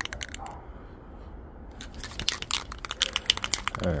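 Rust-Oleum aerosol spray paint can being shaken, its mixing ball rattling in rapid, irregular clicks, a few at first and then a sustained run through the second half.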